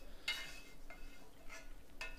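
Lodge plastic scraper scraping stuck-on cooking residue off the bottom of a wet cast iron skillet: a faint, steady rasp with a small tick about a second in.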